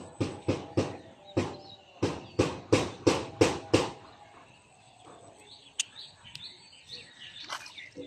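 A rapid run of about ten short, loud voice-like calls, roughly three a second with a brief pause midway, then quieter scattered sounds; near the end a small splash as a fish is jerked out of the water on a pole line.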